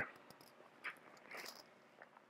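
Near silence from a voiceover microphone in a small room, broken by two faint breaths or mouth noises, about a second in and around a second and a half.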